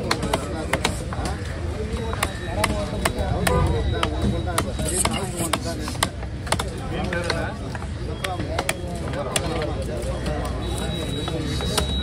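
Heavy fish-cutting knife chopping wahoo into pieces on a wooden log block: a quick, irregular run of sharp chops, roughly two a second, over background voices.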